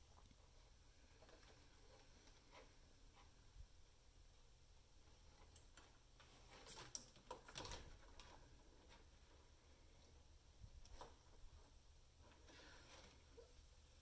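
Near silence, with a few faint ticks and scrapes, most of them about halfway through: rawhide string being drawn through a blade cutter to bevel off its sharp cut edges.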